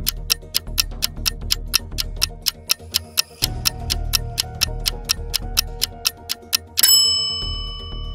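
Countdown-timer sound effect: fast clock-like ticking, about five ticks a second, over background music. About seven seconds in it ends with a bright ringing chime that signals time is up.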